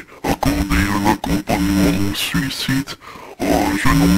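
A low, unintelligible voice chopped into short fragments, each held at a flat pitch and cut off abruptly, with a brief quieter gap about three seconds in.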